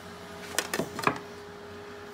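A few light taps and clicks as a steel ruler is handled and set against metal battery module cases, between about half a second and a second in, over a faint steady hum.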